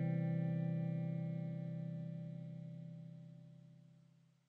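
The song's final chord, held on guitar with a slight wavering, slowly fading out to nothing near the end.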